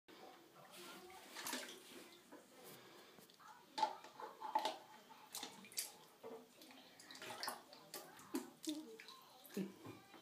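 Light splashing of shallow bath water and plastic stacking cups clicking and knocking together as a toddler plays with them in the tub; a string of short, fairly faint knocks and splashes.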